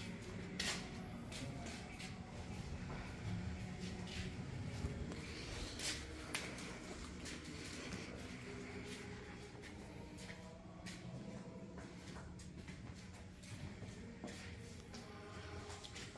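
Quiet indoor room ambience with a faint murmur of voices or music in the background and a few scattered light clicks and knocks.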